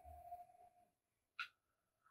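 Near silence: room tone, with a faint short tone at the start and one brief faint sound about one and a half seconds in.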